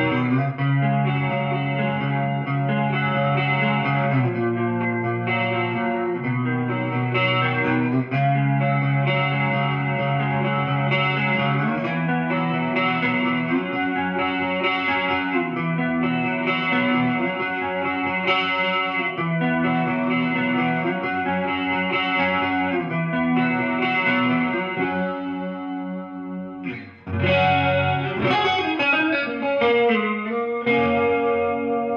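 Electric guitar, a gold-top Gibson Les Paul, played on a clean Marshall amp through an Electro-Harmonix Small Clone chorus pedal: a ringing chord progression with chords changing about every two seconds. Near the end the sound fades briefly, then a new chord is struck.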